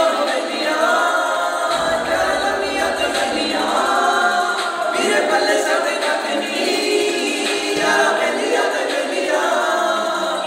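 A group of young men singing a Punjabi song together, unaccompanied, several voices at once.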